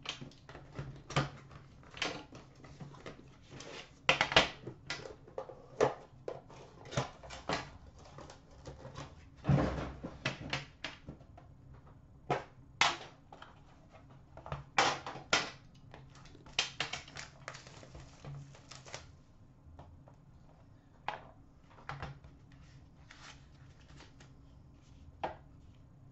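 Hands unwrapping a sealed trading-card box: crackling and tearing of plastic shrink wrap with irregular clicks and taps of the cardboard box and lid being handled, the noises thinning out near the end.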